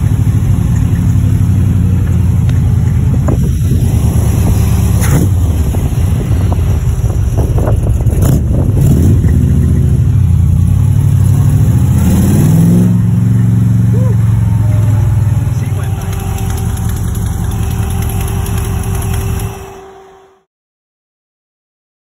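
Freshly rebuilt Chevy V8 of a 1966 Corvette Stingray heard from inside the cabin while driving: a steady deep engine note, revving up briefly about twelve seconds in. The sound fades out near the end.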